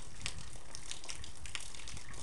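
Low, steady rumble of wind on the microphone outdoors in the snow, with faint, irregular crackles over it.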